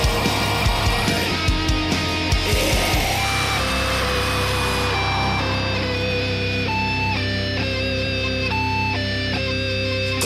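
Heavy rock band music with electric guitars. Drums play for about the first three seconds, then drop out under a held chord while a guitar plays a slow line of long single notes.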